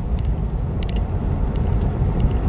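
Steady low rumble of a car's engine and road noise heard inside the cabin while driving, with two brief faint clicks in the first second.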